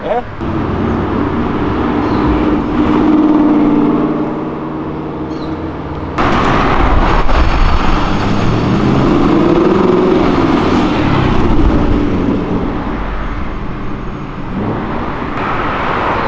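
Car engines accelerating past in street traffic. In the first seconds one engine's note rises and swells, then fades. About six seconds in the sound jumps louder as a sports car, an Aston Martin Vantage, accelerates by, its engine note rising and then falling away.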